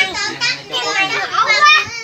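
Children's voices, several talking and calling out over one another in high-pitched chatter.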